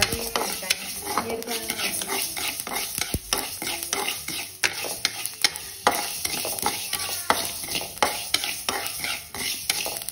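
A wooden spatula stirring spice seeds as they dry-roast in an aluminium pan: continuous scraping with many small sharp clicks as the seeds shift against the pan.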